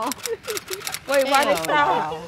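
People talking in conversation, with a few sharp clicks mixed in during the first half-second.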